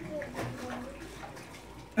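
Faint running water with distant voices in the background.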